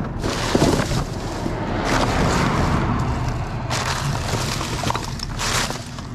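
Rummaging by hand through rubbish in a bin: plastic bags and cardboard rustling and crinkling, with scattered clicks and knocks as items are shifted.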